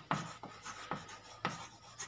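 Chalk writing on a blackboard: about four short, sharp chalk strokes and taps in two seconds, with faint scraping between them.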